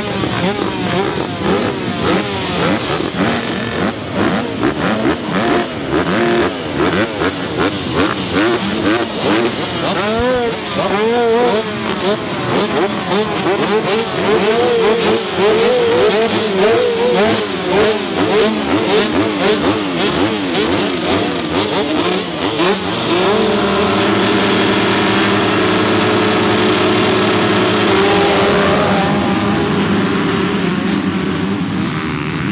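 A field of motocross bikes revving at the start gate, many engines blipped up and down in overlapping bursts. About three quarters of the way through, the revving settles into a steady high note from the whole field held on the throttle as the start comes.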